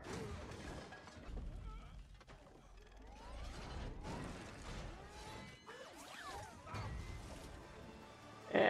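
Action-film soundtrack of a battle between large mechanical suits: a string of crashes and impacts over a low rumble, played at a fairly low level.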